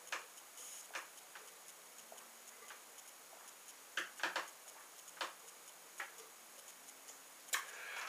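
A man gulping down beer from a glass, his swallows heard as faint, irregularly spaced clicks, with a few close together about halfway through.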